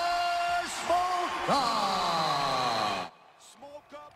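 A ring announcer calls out the winner's name in a drawn-out voice, holding the syllables as long steady notes and ending on one long falling note. The call cuts off suddenly about three seconds in.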